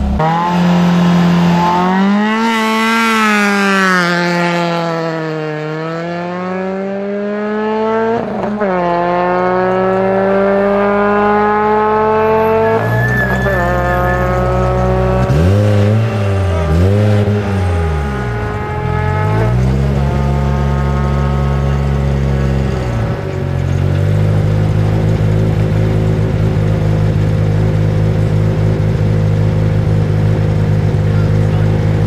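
Ford Fiesta ST rally car's engine pulling away hard from a standing start, its pitch climbing steeply and breaking at each gear change. Further on the revs rise and fall repeatedly as the car brakes and accelerates along the stage, then hold at a steady pitch near the end.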